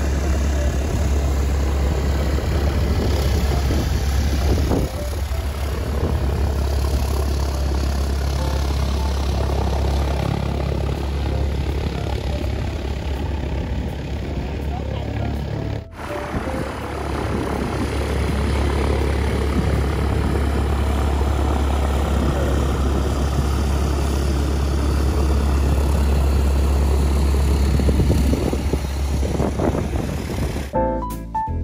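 Light single-engine propeller airplane taxiing, its piston engine running steadily under a strong low rumble. The sound dips and breaks off briefly about 16 seconds in, then carries on.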